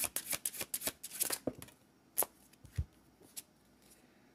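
Deck of oracle cards being shuffled by hand: a quick run of card snaps for about a second and a half, then a few single taps.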